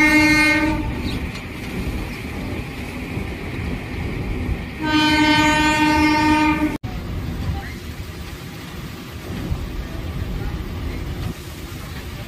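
Train horn sounding twice: one blast ending just under a second in, then a second steady blast of about two seconds starting about five seconds in. Underneath runs the steady low rumble and rattle of a moving train, heard from its open doorway.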